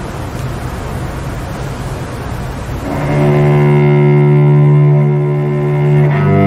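Steady hiss and low rumble, then about halfway through a small string ensemble with cello starts playing: a long held bowed chord, the cello's low note loudest.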